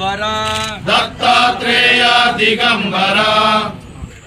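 Loud devotional chanting by men's voices, sung in long held notes; it stops shortly before the end.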